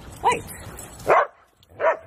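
A whippet barks twice, two short barks about three quarters of a second apart in the second half.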